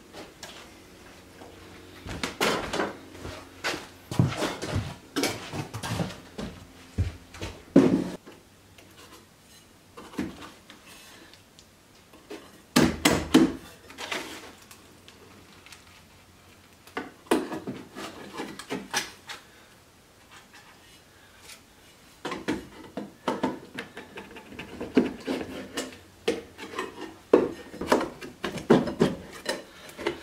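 Knocks, bumps and clatter of an old weathered wooden porch swing being carried, set down on a wooden workbench and handled: irregular bursts of wood-on-wood knocks with quieter stretches between.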